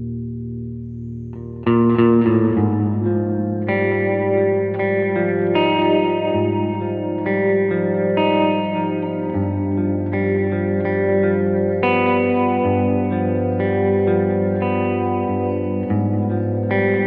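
Solo electric guitar played on a semi-hollow-body guitar through effects pedals and a Fender Princeton amp. A sustained low chord fades away, then just under two seconds in a louder line of picked notes comes in, each note ringing on over the last.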